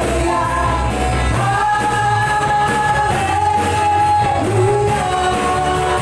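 Live worship band playing an upbeat praise song: women singing with long held notes over bass guitar, electric guitar, keyboard and a steady drum beat.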